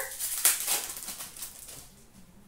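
Glossy trading cards rustling and sliding against each other as a pack is thumbed through by hand: a quick papery shuffle that is loudest about half a second in and fades away toward the end.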